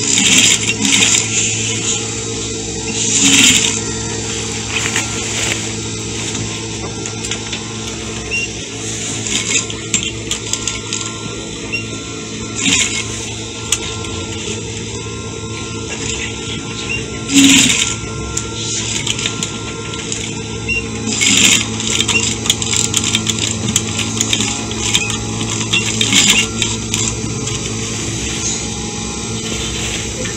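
Sewing machine sewing a zip into a skirt: a steady motor hum, with several short runs of stitching and fabric being handled.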